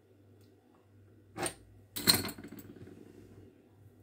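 Metal fluted pastry wheel with a wooden handle set down on a marble counter: a light knock about a second and a half in, then a louder metallic clink that rings briefly.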